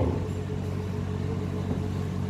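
Steady low background hum during a pause in speech, with no distinct event.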